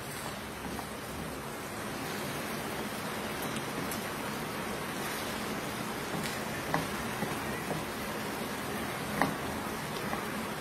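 Chicken and mixed vegetables sizzling steadily in a frying pan, with a few light knocks of a wooden spatula against the pan about six, seven and nine seconds in.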